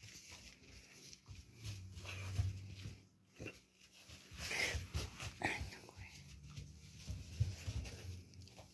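Faint sounds of a Chinese crested dog moving about on a rug, with soft rustles and a few light knocks scattered through.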